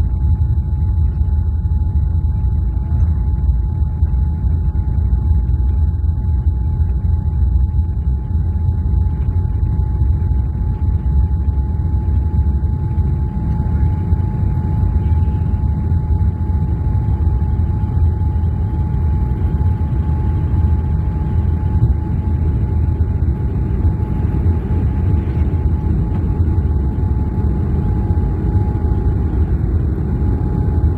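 Cabin noise of a Boeing 787 Dreamliner at takeoff power, its Rolls-Royce Trent 1000 engines and the airflow making a loud, steady low rumble through the takeoff roll and initial climb. A thin steady tone sits above the rumble.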